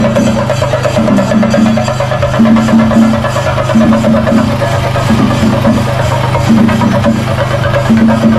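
Festival procession music: fast, dense drumming over a steady low drone, with a short pitched phrase that repeats again and again.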